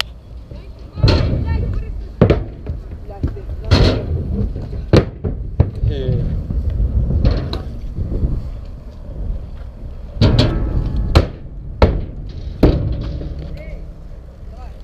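Riding around a concrete skatepark: a steady low rumble of wheels rolling over concrete and wind on the camera microphone, broken by about nine sharp clacks and knocks of wheels and frame hitting the ramps and ground.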